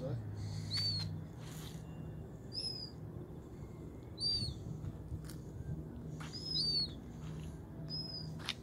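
A bird's short, high chirp repeated every couple of seconds, over a low steady hum.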